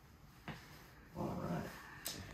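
A light click about half a second in, then a short whining vocal sound lasting about half a second.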